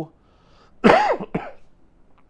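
A loud, sharp cough about a second in, with a short second catch right after it.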